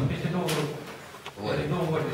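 Men talking across a meeting table, with a brief sharp noise about half a second in and a fainter click a little past one second.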